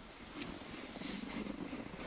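Quiet, steady hiss and scrape of skis sliding over packed snow, getting a little louder about half a second in.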